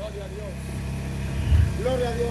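A steady low hum, like a running motor, continues through a pause in the speech. Brief pitched voice sounds come at the start and again near the end.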